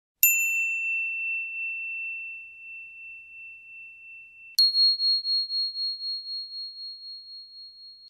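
A bell chime struck twice: a ding a moment in that rings down slowly for about four seconds, then a higher ding about four and a half seconds in that rings on, wavering as it fades.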